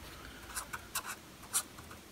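Pen writing on a sheet of paper: a few short scratchy strokes as Arabic letters are written, the loudest about a second and a half in.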